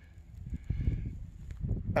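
Soft, irregular low thumps and rumble from footsteps and camera handling while walking across a dry grass field.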